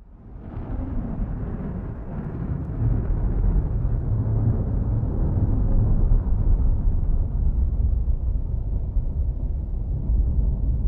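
A steady low rumbling noise with no tone or beat in it. It swells in over the first few seconds and then holds.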